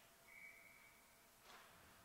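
Near silence, with one faint, steady high tone lasting about a second near the start.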